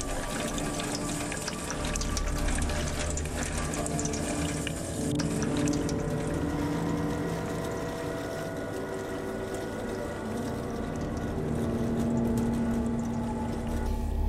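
Water running from a tap and splashing over hands, over a low sustained drone; the splashing thins out about halfway through.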